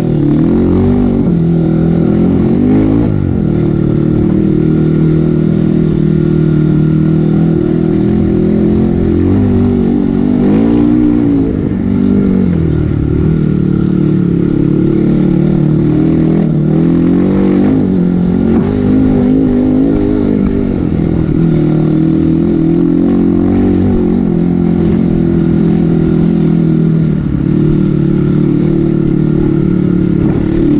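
Kawasaki KLX140G's single-cylinder four-stroke engine running under way on a dirt trail, its pitch rising and falling over and over as the throttle opens and closes.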